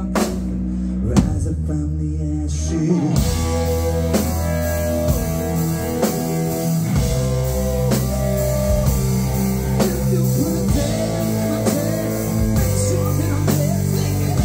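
Live rock band playing an instrumental passage: overdriven electric guitar with bending notes over electric bass and drum kit. The cymbals and full drums come in about three seconds in.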